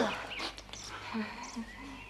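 Faint bird chirping in a lull in the dialogue, with a brief soft voice sound about a second in.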